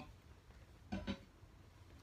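Quiet room tone in a pause, broken about a second in by one short, low voiced sound like a brief "um" from a man.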